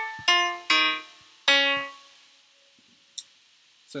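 Software grand piano (GarageBand's Steinway Grand Piano) played through laptop speakers from a MIDI button-pad controller: three single notes in the first second and a half, the last ringing out and fading away. A short faint click follows about three seconds in.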